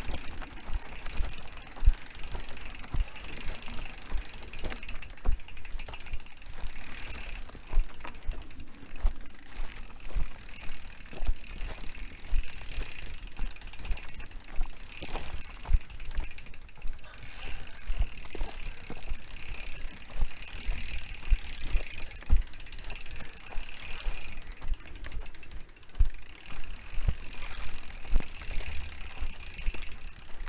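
Mountain bike descending a dry dirt trail: the rear hub's freewheel ticks while coasting, the knobby tyres crunch over the dirt, and the bike knocks and rattles over bumps. A rushing noise swells and fades every couple of seconds.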